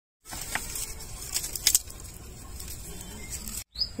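Oil heating in an iron kadhai over a wood-fired clay stove: a steady low hiss with a few sharp crackles. It starts abruptly a moment in and cuts off just before the end.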